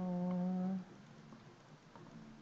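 A woman's drawn-out hesitation hum, held on one steady pitch for about a second, then quiet room tone.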